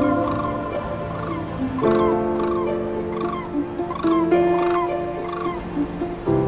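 A flock of large migrating birds calling in flight, short calls repeated about twice a second, over background music with long held notes.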